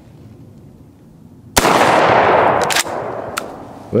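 A single 12-gauge slug fired from an Ithaca Model 37 pump shotgun about a second and a half in, its report echoing for about a second. A few short clicks follow as the slide action is worked.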